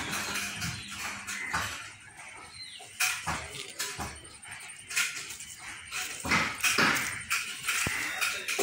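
Animal calls coming in irregular bursts a second or two apart.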